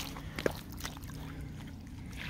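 Footsteps squelching in soft, sticky tidal mud, with a sharp click at the start and another about half a second in, over a steady low rumble.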